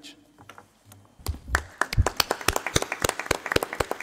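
Applause from a small audience starting about a second in: loose, uneven individual hand claps, with a few low thumps as it begins.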